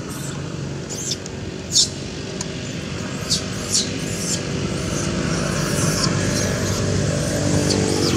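A motor engine running steadily, growing louder through the second half, with a few brief sharp high sounds over it.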